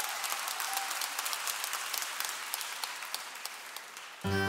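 Audience applauding, dense clapping that gradually dies away toward the end, just before the band starts to play.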